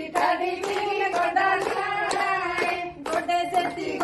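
A group of women singing together while clapping their hands in time, the claps sharp against the held sung notes. The singing and clapping break off briefly about three seconds in, then carry on.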